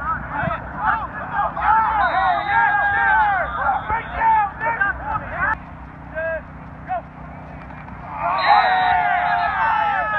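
Many voices shouting and calling out at once from players and people on the sideline during a flag football play, louder in surges early on and again from about eight seconds in.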